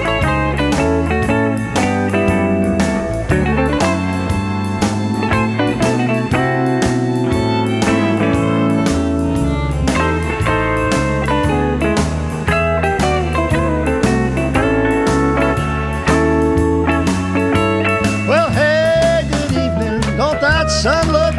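Country band playing an instrumental solo break in a blues shuffle, with a guitar lead over a steady bass and rhythm section. Near the end, sliding, wavering notes come in.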